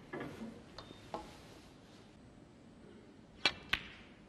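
Snooker shot: two sharp clicks of cue and balls about a third of a second apart near the end, with fainter clicks earlier.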